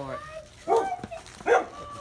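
Dog barking behind a front door, two short barks about a second apart.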